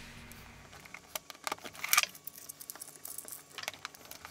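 Handling noise: scattered light clicks and small metallic rattles, the sharpest about two seconds in, with a busier cluster near the end.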